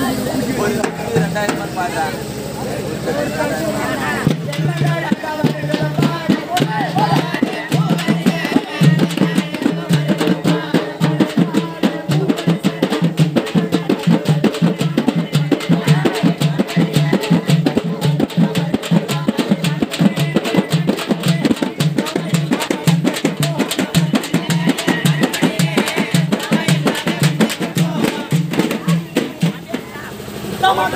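Tamil folk drums beaten with sticks by several drummers in a fast, dense rhythm. They start about four seconds in, over the voices of a crowd.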